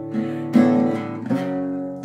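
Acoustic guitar strummed, chords struck three times and left ringing: once at the start, loudest about half a second in, and again a little past one second in.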